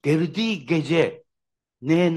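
A man speaking, with a pause of about half a second partway through before he goes on.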